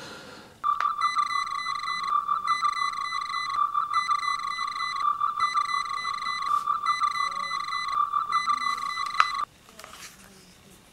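Electronic beeping tone from a scratch-built tricorder prop: one steady high note with a warbling, repeating pattern about once a second. It starts about half a second in and cuts off suddenly near the end.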